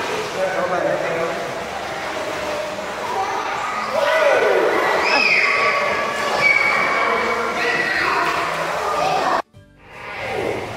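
Several children screaming and shouting in an enclosed indoor pool room, their loud voices echoing off the walls. The sound cuts off suddenly near the end.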